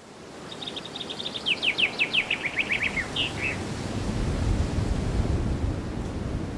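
A bird's song: a fast run of about twenty chirps that slide lower in pitch toward the end, over a steady outdoor hiss. A low rumble builds from about four seconds in.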